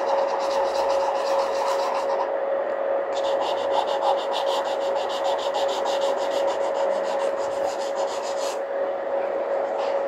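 Pencil scratching on drawing paper in quick, repeated sketching strokes, in two spells: one in the first two seconds and a longer one from about three seconds in to near the end. A steady hum runs underneath.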